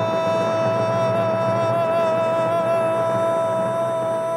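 A man's singing voice holding one long, steady note of a hymn line, with a slight waver, over a soft instrumental accompaniment.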